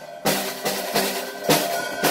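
Acoustic drum kit played by a small child: about four uneven hits on the snare and toms in two seconds, with cymbals ringing between them.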